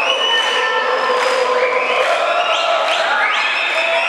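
Large arena crowd cheering and shouting steadily, many high voices overlapping.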